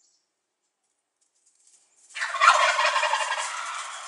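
A male wild turkey gobbling: one loud, rapid rattling gobble starting about two seconds in and trailing off over the next two seconds.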